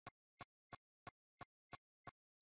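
Near silence broken by faint, sharp clicks, evenly spaced at about three a second.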